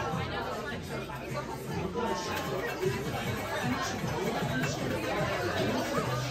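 Chatter of many people talking at once in a busy restaurant dining room, a steady background of voices.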